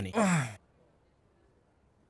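A man's breathy, voiced sigh falling in pitch, about half a second long, followed by quiet room tone.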